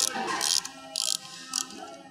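Ratchet wrench clicking in short bursts, about two a second, as the conveyor drive's jack screw is backed out to release the belt tension on the motor mount plate.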